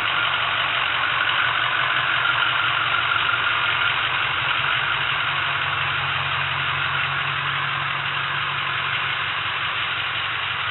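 Ford F-250's 6.0-litre V8 diesel idling steadily.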